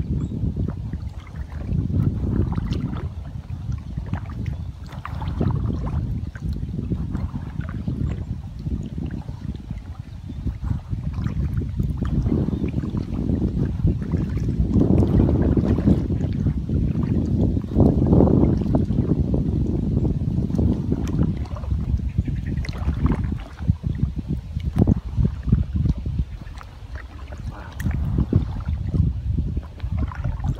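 Paddle strokes of a one-person inflatable kayak: water splashing and trickling off the blades, rising and falling every few seconds, with wind rumbling on the microphone.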